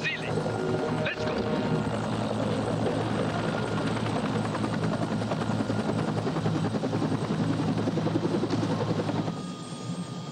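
Helicopter flying, its rotor beating fast and steadily over the engine's hum. The sound drops away about nine seconds in.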